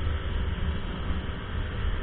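Honda Biz 100's single-cylinder engine held at full throttle at speed, largely masked by steady wind buffeting on the microphone and road noise.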